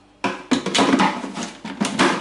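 Plastic lid and bowl of a food processor being fitted and locked into place, a quick run of clattering clicks and knocks.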